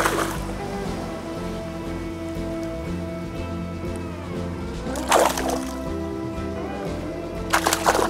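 Background music over short splashes of a hooked bonefish thrashing in shallow water as it is brought to hand: one at the start, one about five seconds in, and a quick double splash near the end.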